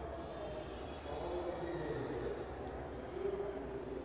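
Indoor hall ambience: a steady low hum with faint, distant voices murmuring in the background.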